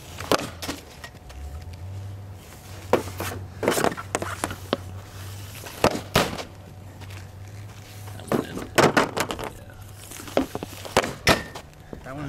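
Easton SE16 composite hockey stick shooting pucks off a wet shooting pad: a series of sharp cracks a few seconds apart, some quickly followed by a second hit as the puck strikes the tarp-backed net.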